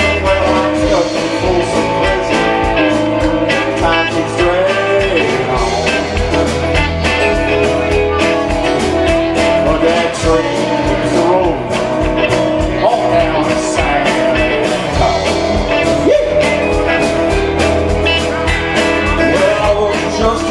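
Live band playing a song with electric and acoustic guitars, bass, keyboard and drums, at a steady beat.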